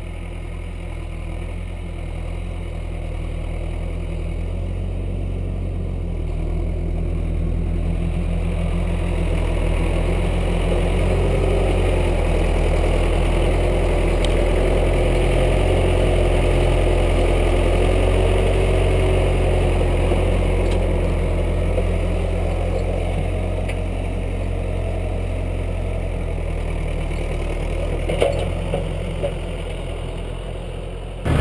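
Massey Ferguson 590 tractor's four-cylinder diesel engine running, growing louder as the tractor comes up to the trailer with a round bale on its front loader. A steady whine sits over the engine while the loader lifts the bale, then the engine eases off as the tractor backs away, with a few knocks near the end.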